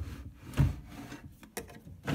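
Wooden drawer scraping as it is pulled open by hand, with a heavy knock about half a second in and a sharp click near the end.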